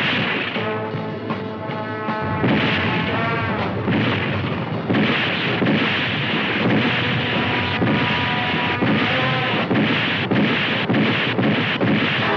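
Soundtrack music, then from about five seconds in a dense, continuous rumble and clatter of rocks being flung aside by fast superhuman digging at a cave-in, with frequent knocks.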